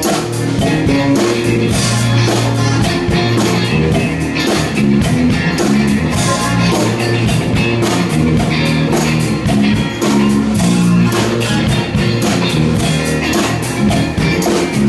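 A live band playing funky rock: guitars over a drum kit keeping a steady beat.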